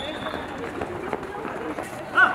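Outdoor ambience of a children's football practice: faint, distant children's voices and shouts, with running footsteps and a few faint knocks of balls being kicked.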